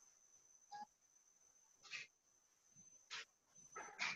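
Near silence, with a faint steady high whine and three faint, brief sounds spread through it.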